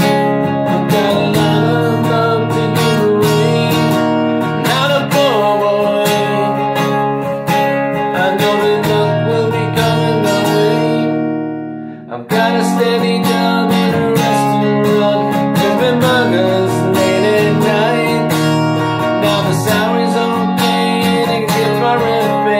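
Steel-string acoustic guitar with a capo, strummed steadily in chords. About halfway the chords are left to ring and die away briefly, then the strumming starts again.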